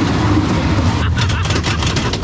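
Wacky Worm family roller coaster train running along its steel track: a steady low rumble, with rapid clattering from about a second in.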